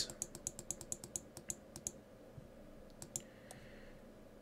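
Computer mouse clicking rapidly, about eight or nine clicks a second for roughly two seconds, as a drop-down list is scrolled, then two or three single clicks near the end as an item is selected.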